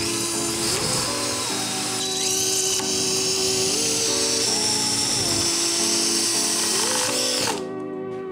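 Cordless drill running as it bores into a wall panel, cutting out about seven and a half seconds in, over background music.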